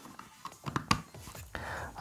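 Handling noise from a 3.5 mm audio plug on a coiled cable being pushed into a capture card's mic-in jack: a few small clicks and rustles, then a soft hiss near the end.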